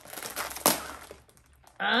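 Plastic cookie package crinkling as it is peeled open, with one sharp crackle partway through.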